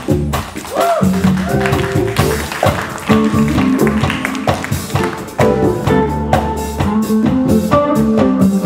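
A jazz fusion band playing live: drum kit and congas under electric bass, electric guitar and keyboard, with a couple of bending notes about a second in.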